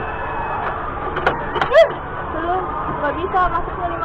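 Brief bits of people's voices over steady outdoor background noise, with a faint continuous tone running underneath.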